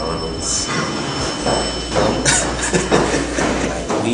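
Indistinct talking over a noisy background with a steady low hum and rumble, broken by two short hissing bursts.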